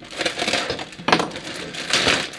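Thin clear plastic bag crinkling and crackling as hands pull it open around a plastic model-kit runner, with a sharp crackle about a second in.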